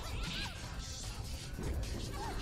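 Fight sound effects from an animated action scene: a quick run of crashing impacts and hits over music.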